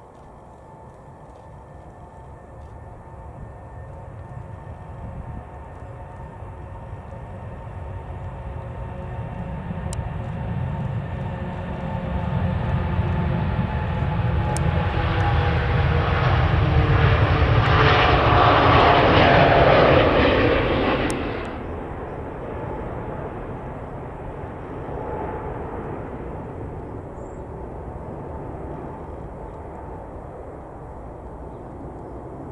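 Boeing 787-9 Dreamliner's Rolls-Royce Trent 1000 engines at takeoff power, the roar building through the takeoff roll and liftoff with a whine that falls in pitch as it passes. The sound drops sharply about two-thirds of the way in and carries on as a lower rumble as the jet climbs away.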